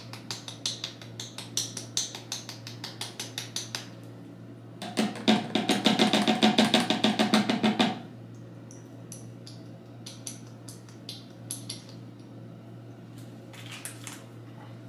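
Repeated tapping on a small glass essential oil bottle held upside down over an amber bottle, shaking drops into rice water. For about four seconds the taps come at about four or five a second. Then comes a louder, faster run of taps with a steady pitched drone under it, and after that a few scattered taps.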